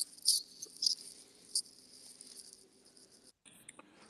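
Faint hiss and low hum of an open microphone on a voice call, with two brief soft noises in the first two seconds. The line cuts out completely for a moment near the end.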